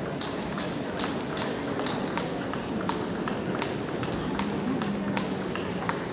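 Sports-hall ambience: irregular sharp clicks of table tennis balls being hit and bouncing, a few a second, over a murmur of spectators' voices.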